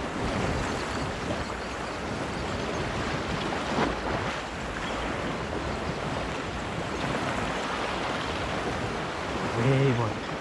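Small waves lapping and washing onto a sandy beach, with wind on the microphone; one slightly louder wash about four seconds in.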